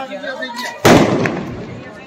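A single loud firecracker bang overhead about a second in, an aerial Diwali firework bursting, with a long fading tail as it dies away. Voices are heard just before it.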